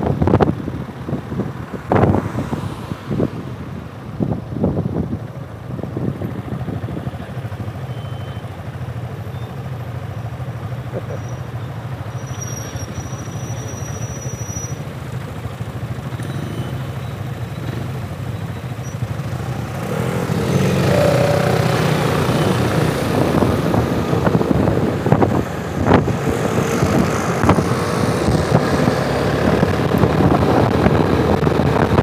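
Piaggio MP3 three-wheeled scooter heard from the rider's seat: engine with wind buffeting the microphone as it rolls, then settling to a quieter steady idle at a standstill. About two-thirds of the way through it grows louder as the scooter pulls away and accelerates, with a wavering engine tone and rising wind noise.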